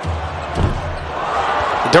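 Basketball arena sound during live play: crowd noise growing steadily louder, with a few low thuds of the basketball bouncing on the hardwood court about half a second in.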